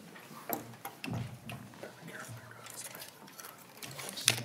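Quiet hearing-room background picked up by desk microphones: faint murmured voices with a few light clicks and knocks, the loudest about a second in.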